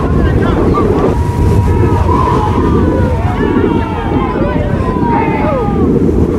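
Wind buffeting the microphone with a steady low rumble. Faint distant voices of players and spectators call out over it.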